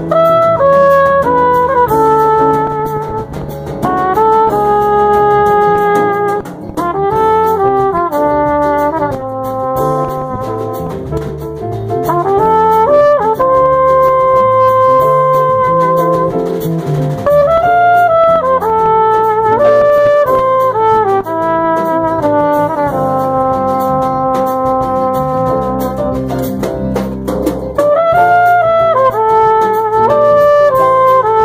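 Live jazz samba: a lead horn plays the melody in held notes and quick runs over a bass line and rhythm section.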